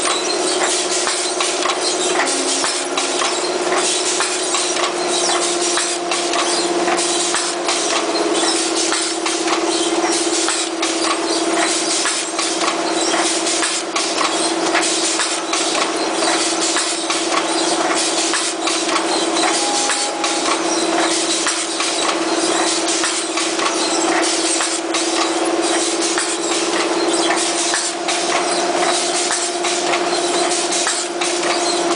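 Patch-handle bag making machine running: a steady motor hum with continual clicking and clatter from its moving sealing and punching heads.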